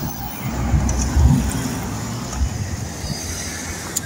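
Road traffic outdoors: a low, uneven rumble of passing cars.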